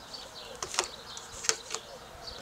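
A flying insect buzzing close to the microphone, its pitch wavering as it moves, with a few sharp crackles of handled packaging, the loudest about a second and a half in.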